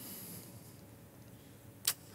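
The fading tail of a man's long exhaled breath, then a quiet pause with one short sharp click shortly before the end.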